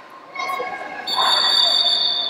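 A long, high, shrill tone starts about a second in and holds steady, over voices in the hall.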